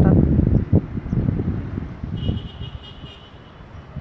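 Low rumbling wind and handling noise on a phone microphone, loudest in the first second and a half, with a single knock about three-quarters of a second in. A faint, high, steady tone sounds for about a second just past the middle.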